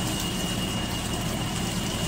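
Water running steadily from a kitchen tap into the sink as dishes are washed by hand.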